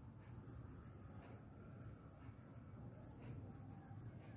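Writing by hand on a paper textbook page: faint scratching strokes of the writing tip on paper.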